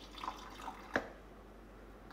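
Water poured from a glass into a stainless-steel mixer jar of chopped apple, a faint trickle and drip, with a single light click about a second in.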